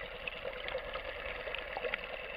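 Underwater ambience picked up by a submerged camera over a coral reef: a steady muffled hiss scattered with many small clicks and crackles.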